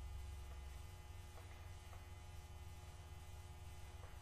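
Quiet shop room tone: a low steady hum, with two faint light clicks about a second and a half and two seconds in.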